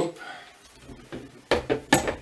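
Handling knocks of a small telescope tube being set onto the mounting head of its tabletop tripod: light fumbling, then two sharp knocks near the end as it goes into place.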